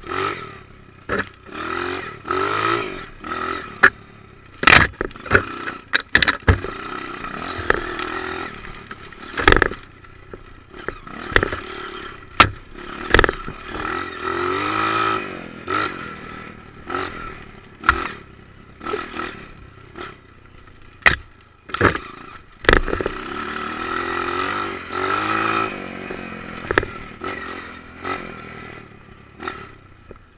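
Dirt bike engine revving up and down in repeated swells as it is ridden over a rough sandy trail. Frequent sharp knocks and rattles come from the bike jolting over the uneven ground.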